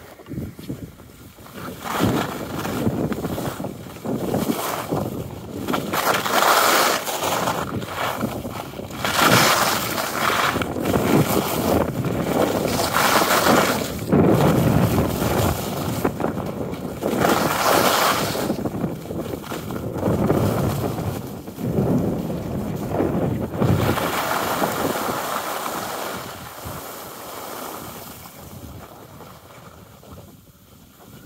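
Skis running over groomed, packed snow with wind buffeting the microphone, a rushing noise that swells and fades in surges every second or two and dies down near the end.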